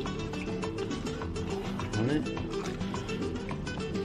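Background music with a quick, steady rhythm.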